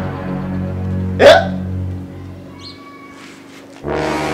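Background music holding low sustained notes, cut by a single short, loud sound falling sharply in pitch just over a second in. The music thins out after about two seconds and comes back in just before the end.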